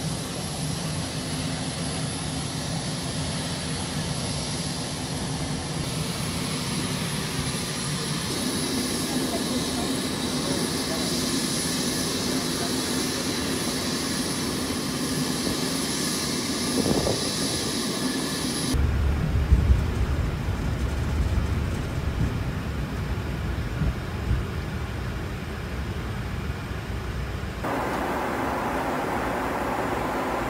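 Jet airliner noise: a steady whine with a high tone as the plane stands on the apron. About two-thirds of the way in it cuts abruptly to a low rumble, and near the end to the steady noise of a jet cabin in flight.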